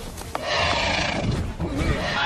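Screeching call of a winged film creature, a mountain banshee: a harsh, noisy shriek that starts about half a second in and holds loud.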